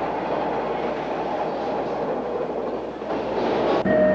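A rail car running on track: a steady rolling, rattling noise that cuts off shortly before the end.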